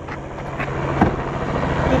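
Light propeller aircraft's engine coming in to land, a steady noisy drone with a low hum that grows slowly louder.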